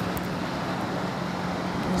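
Steady beach ambience of wind and surf noise, even and unbroken, with a constant low hum underneath.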